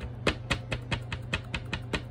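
An ink pad tapped rapidly onto a rubber stamp on an acrylic block to ink it, a quick even run of hard plastic clicks about five a second. A steady low hum runs underneath.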